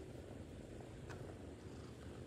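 A kitten purring steadily while being stroked under the chin, with a faint click about a second in.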